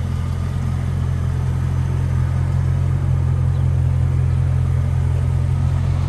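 A 2002 Pontiac Trans Am's 5.7-litre LS V8 idling steadily through a MagnaFlow exhaust, low-pitched and unchanging.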